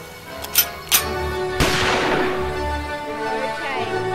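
Two sharp clicks as a toy gun is readied, then a single loud gunshot-like blast with a fading tail as it fires, over background music.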